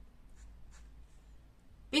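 Felt-tip pen on paper: a couple of faint brief strokes as the pen moves across the sheet, over a low steady hum.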